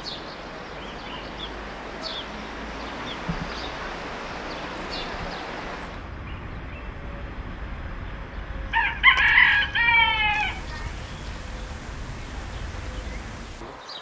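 A rooster crowing once, a loud call of a second and a half about nine seconds in, over a steady outdoor rush. Before it, small birds chirp in short high notes.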